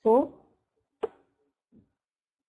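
A woman's voice says one word, then a single short, sharp click about a second in.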